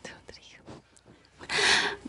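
A person's voice: faint low sounds, then a brief whisper near the end.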